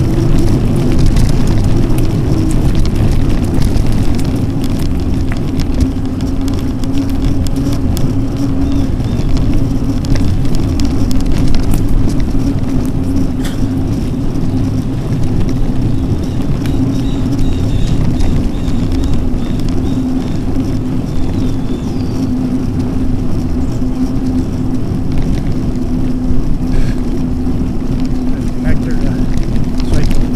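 Mountain bike rolling along a gravel and paved trail road: loud, steady wind rumble on the camera microphone mixed with tyre noise, over a steady hum and occasional small clicks.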